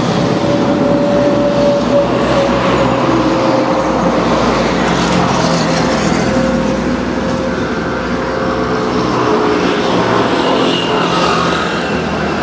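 Cordless electric hair clipper buzzing steadily as it shaves a man's head close to a clip-on mic, its hum sagging slightly in pitch under the load of the hair.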